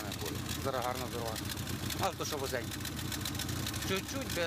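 Car engine idling steadily with a low, even rumble while a man talks over it.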